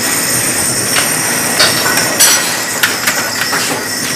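Kitchen noise: a steady hiss with several sharp metallic clinks and knocks, the biggest a little past the middle.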